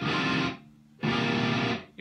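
Electric guitar strumming chords: a ringing chord is cut short about half a second in, then a second chord is strummed about a second in and rings until it is stopped just before the end.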